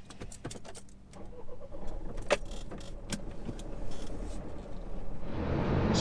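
Keys jangling, with scattered clicks and knocks, in the cab of a van as the driver handles the ignition. Near the end a steady engine rumble comes up.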